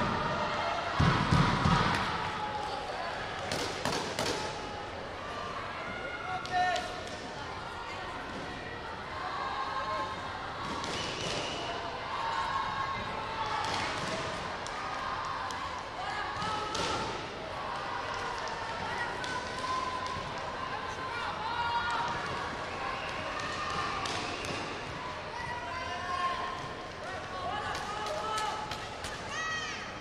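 Sports hall ambience: background voices chattering throughout, with a few thuds in the first couple of seconds and another around four seconds in.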